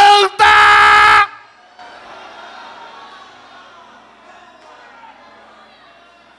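A man's loud shouted voice through a church PA, ending in one held, steady note of about a second that cuts off sharply. The big hall then drops to a faint murmur from the congregation.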